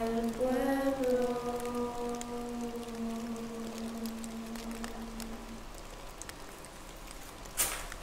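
A single voice holding a long sung note that fades away about five seconds in, with faint crackles behind it. Near the end a short, sharp scrape of a shovel digging into a dry-leaf-covered floor.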